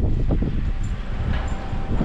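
Wind rushing over the microphone of a camera in a moving car, with the car's road noise underneath.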